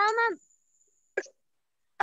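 A child's voice over a video call finishes a word with a falling pitch, then a single short click a little over a second in, with dead silence around it.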